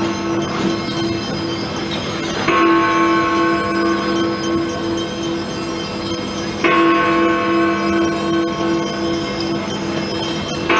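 Big Ben, the Great Bell of the Elizabeth Tower, striking one heavy stroke about every four seconds: two strokes, about two and a half and about six and a half seconds in, each with a long wavering hum that is still ringing when the next stroke lands.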